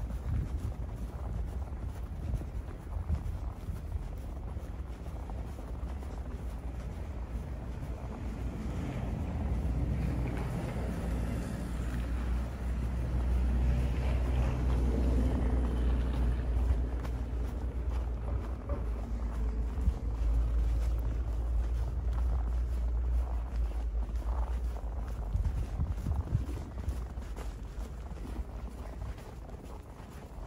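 Low rumble of a vehicle engine, swelling about eight seconds in, holding through the middle and fading near the end, over wind on the microphone.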